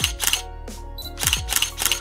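Several camera shutter clicks in quick succession over background music.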